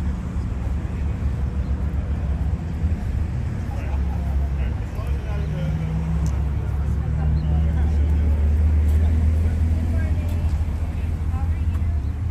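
A steady, loud low rumble, with people talking faintly in the background.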